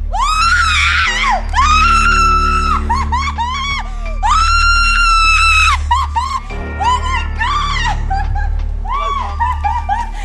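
A person letting out long, high-pitched thrill screams while riding a giant rope swing, three long screams within the first six seconds with shorter yelps between and after.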